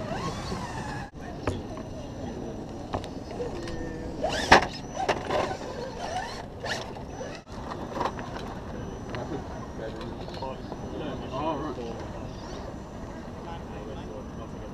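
Steady outdoor noise of wind and surf, with a few brief bursts of onlookers' talk, and one sharp loud sound about four and a half seconds in.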